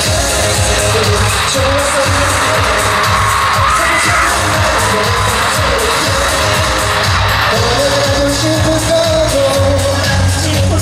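Live pop music played loud over an arena sound system and recorded from within the audience: a sung vocal line over a steady bass beat, with the crowd cheering underneath.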